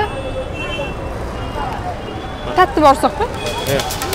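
Busy street ambience: a steady wash of traffic and crowd noise, with a few close words spoken about two and a half seconds in and again near the end.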